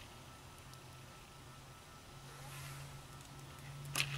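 Faint rustle of hands working braided PET cable sleeving along a wire, over a steady low hum, with a short click near the end.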